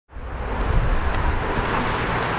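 Street traffic: a car driving along the road, a steady noise of tyres and engine with a low rumble.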